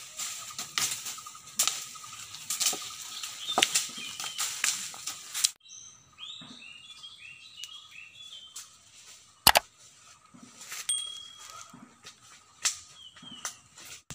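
Wooden sticks beating leafy branches, irregular sharp cracks over rustling leaves. After a sudden cut a few seconds in, there are a few bird chirps and one single sharp crack.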